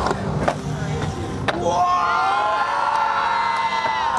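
Skateboard wheels rolling on a concrete bowl, with three sharp clacks of the board in the first second and a half. From about two seconds in, onlookers cheer with long whoops.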